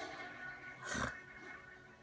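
Soft guitar background music, with a short breathy laugh through the nose about a second in.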